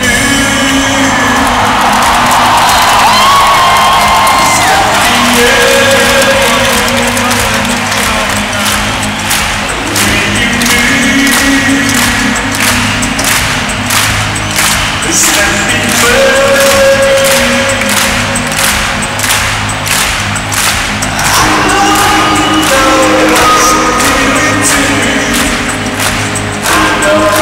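A live band playing through a stadium sound system, heard from the stands: long held notes over a steady drum beat.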